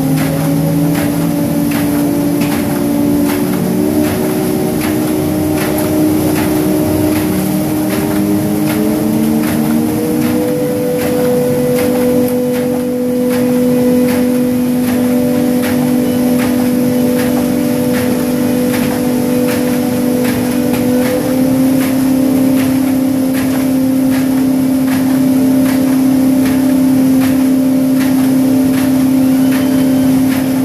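Rotary single-knife sheet cutter and sheet stacker of a corrugated cardboard single facer line, running: a steady machine hum with several held tones, one of which glides up in pitch about eight to ten seconds in. A regular train of clicks runs over the hum.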